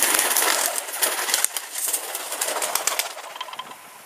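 A flock of pigeons taking off together, their wings clapping and flapping in a dense flurry that is loudest for the first second or so, then thins and fades as the birds fly off.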